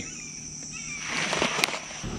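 Outdoor ambience with a steady high insect drone. About halfway through, a brief hiss-like swell of noise rises and fades, with a single sharp click near the end.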